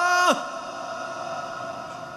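A muezzin's voice over large-mosque loudspeakers ends a long held note of the call to prayer, sung in maqam saba, with a sharp downward slide about a third of a second in. The hall's long reverberation then rings on and slowly fades.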